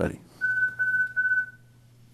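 Electronic timer beep, one steady high pitch held about a second and a half with two brief breaks, marking the end of the one-minute public-comment speaking time.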